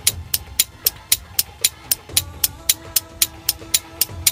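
Clock-ticking sound effect, even ticks about four times a second. Sustained background music notes come in about halfway.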